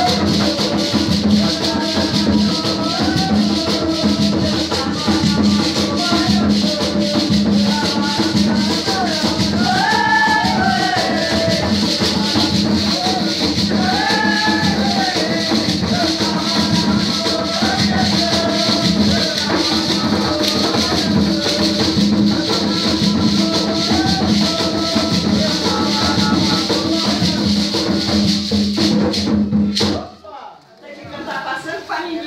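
Devotional song with voices singing a wavering melody over the fast, steady shaking of maracas, with a sustained low hum beneath; the music cuts off abruptly at the very end.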